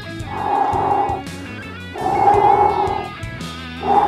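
Two breaths blown through pursed lips, each about a second long, to cool and set a blob of hot glue holding a relay. Background rock music with guitar plays throughout.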